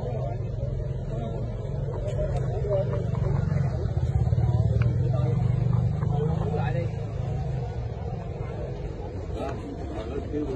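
A motor vehicle's engine rumble passing close by, swelling to its loudest around the middle and then fading, under a background of people chatting.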